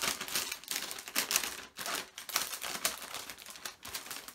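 A clear cellophane gift bag crinkling and crackling unevenly as it is handled around a mug inside it.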